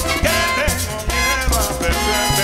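Live salsa band playing, with congas and piano over a steady, rhythmic bass line.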